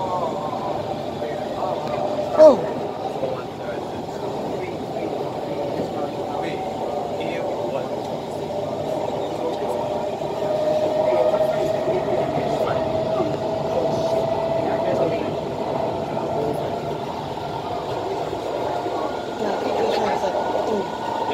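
SMRT Kawasaki C151 train running, heard from inside the car at the doors: a steady rumble of wheels on rail, with a whine that climbs slowly in pitch through the middle. There is one sharp knock about two and a half seconds in.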